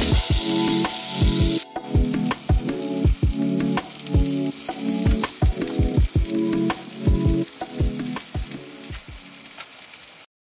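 Food sizzling as it fries on a griddle and in a frying pan, under background music with a steady beat.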